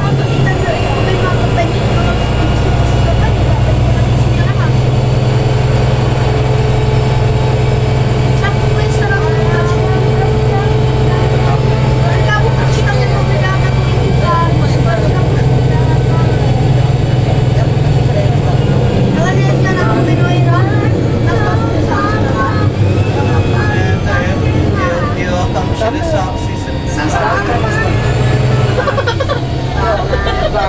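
Karosa B961 articulated city bus's diesel engine running under way, heard from inside the passenger cabin with a steady low engine note that changes about two-thirds of the way through, under the chatter of passengers.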